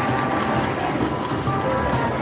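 Electronic music and tones from a Hot Stuff Wicked Wheel slot machine while its reels spin, a string of held notes that change every fraction of a second.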